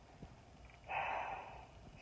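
A man's short audible breath about a second in, lasting about half a second.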